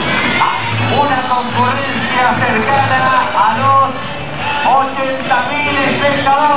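Carnival comparsa parade music with a low drum beating regularly, about once every second, and voices over it.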